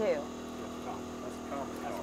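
Steady mechanical hum from the bowfishing boat's motor, running without change under faint voices.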